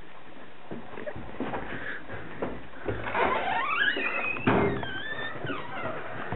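A door creaking open with rising, then falling, squeaks, with a thud about four and a half seconds in among scattered handling knocks.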